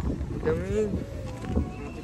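Wind buffeting the phone's microphone as a steady low rumble, with a voice calling out briefly about half a second in.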